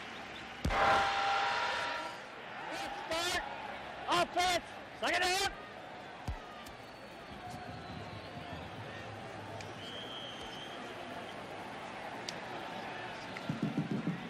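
Stadium crowd noise at a football game: a steady murmur, with a louder swell about a second in and a few short shouts of a man's voice between about three and five and a half seconds in.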